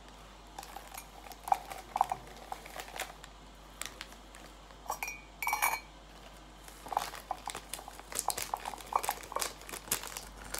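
Paper sachet crinkling as its contents are shaken into a ceramic mug, with a metal spoon clinking against the mug; one clink rings briefly about five seconds in. The clicks come scattered and grow busier in the second half.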